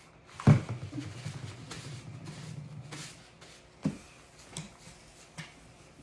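Paper towel rubbing and crinkling as chalk-paste-covered hands, then the countertop, are wiped. A sharp knock sounds about half a second in, and there are a few lighter taps later.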